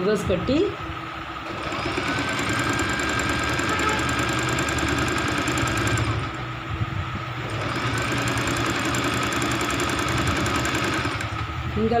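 Singer Simple electric sewing machine running, stitching along the fabric's edge: its motor whine climbs about a second and a half in, eases off briefly around the middle, then picks up again and stops near the end.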